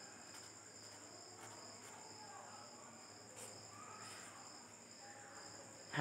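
Near silence with faint scratching of a felt-tip marker writing a word on paper, over a faint steady high-pitched tone.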